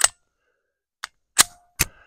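Ruger Security-9 Compact pistol being loaded and a round chambered: a metallic click right at the start, a faint one about a second in, then two sharp metal clacks close together, the first with a brief ring.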